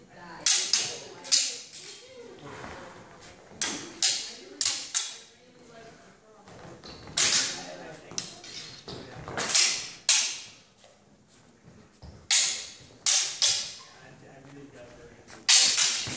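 Swords clashing in sparring: sharp clacks of blade on blade with a short ring, coming in quick runs of two to five strikes spaced a few seconds apart.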